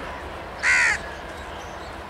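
A single short, loud, harsh bird call about half a second in, standing out over steady outdoor background noise.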